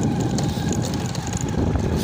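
Motorcycle riding along a rough dirt track: a steady low rumble of the engine and tyres, mixed with wind buffeting the microphone.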